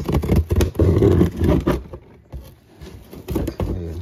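Cardboard box being ripped open: loud tearing and scraping of cardboard for the first couple of seconds, then scattered crackles and a second, shorter burst of tearing near the end.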